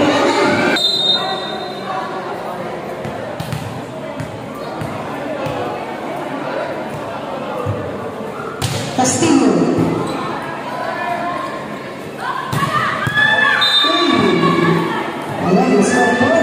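Volleyball being played in an echoing gymnasium: sharp ball hits and bounces, with players and spectators shouting, the voices loudest about nine seconds in and over the last few seconds.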